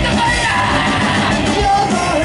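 Live rock band with a horn section playing loudly, a singer shouting and singing over drums and guitars.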